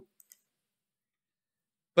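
Near silence with two faint ticks just after the start and a sharp click at the very end.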